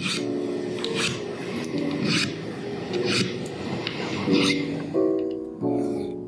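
A fret end file rasping across the ends of a guitar's metal frets in short strokes about once a second, taking the sharp edge off the fret ends, under background music with held notes.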